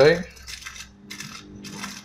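Thin aluminium foil from a coffee capsule being handled and crinkled, about three short, light, metallic crackles.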